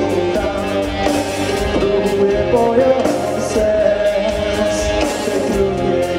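Live rock band playing: electric guitar, bass guitar and drum kit.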